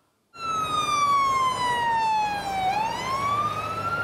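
Fire truck siren wailing, starting abruptly a moment in: its pitch falls slowly for about two and a half seconds, then climbs again.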